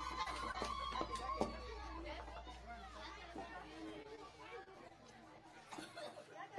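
A children's choir's song ends on a held note about a second and a half in, with a few knocks around it. Then comes quieter, scattered chatter of many voices.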